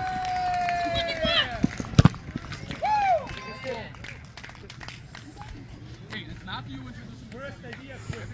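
A long drawn-out shout that slides slowly down in pitch and breaks off about a second and a half in, then a sharp thud of a soccer ball being kicked about two seconds in, the loudest sound here. A short shout follows, then fainter scattered voices across the field.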